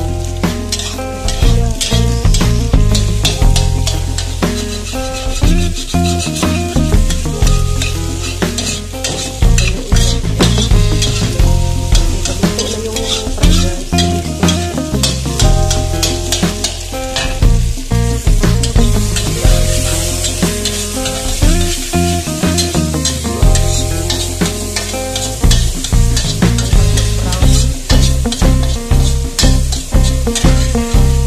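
Egg frying in a wok while a metal spatula scrapes and taps against the pan, with a sizzle underneath. Background music with a bass line runs along with it.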